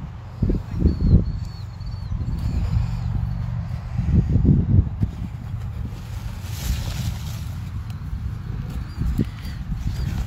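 Wind rumbling over the phone's microphone in an open field, swelling and easing. A bird gives a quick series of short high chirps between one and three seconds in.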